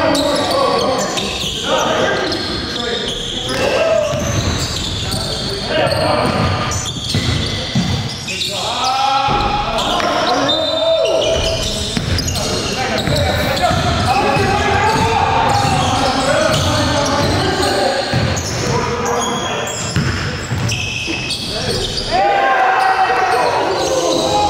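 Pickup-style basketball game: the ball bouncing repeatedly on the gym floor, with players' voices calling out in between, echoing in a large gymnasium.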